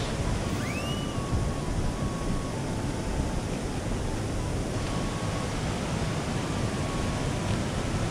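Steady rushing of a shallow, fast mountain river running over rocks and small rapids.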